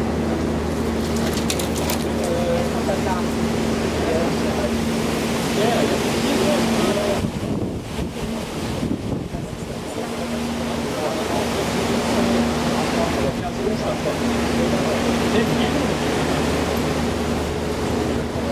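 Tour boat's engine running steadily with a low hum, under the rush of wind and water.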